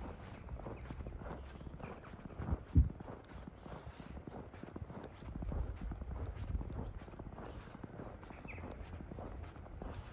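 Footsteps on packed snow, an irregular run of soft steps over a low rumble on the microphone, with one sharp loud thump about three seconds in.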